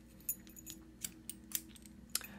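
A few faint, sharp metallic clicks and clinks as a steel Anchor Las 810-1 disk-detainer padlock and its key are handled and turned in the hand, over a faint steady hum.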